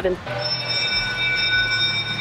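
A held chord of several steady high tones, starting just after a spoken word and lasting about two seconds without wavering.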